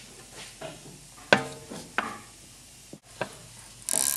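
Small metal clicks and clinks of a grease fitting being threaded into a new lower ball joint with a small wrench: a few sharp ticks, roughly a second apart. A brief scrape comes near the end.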